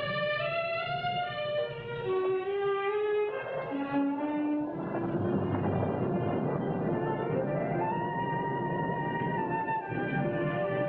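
Orchestral suspense underscore with strings: a wandering melody steps down to a low note. Near the end it glides upward to a long held high note.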